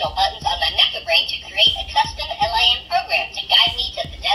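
Meccano M.A.X. robot's speaker playing high-pitched synthetic babble without words, a run of quick chirpy syllables.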